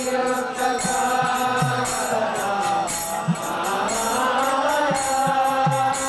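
Group devotional chanting (kirtan): voices sing a long-held, gliding melody together, while small hand cymbals (kartals) keep a steady quick beat and a drum adds occasional low strokes.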